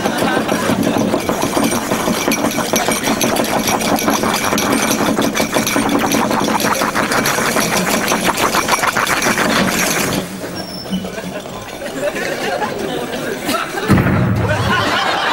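Chemistry lab glassware apparatus rattling and bubbling fast and loud as it boils over with smoke. It cuts off suddenly about ten seconds in, followed by a quieter stretch and a single knock near the end.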